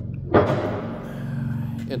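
A single sudden thump about a third of a second in, trailing off into a steady low hum.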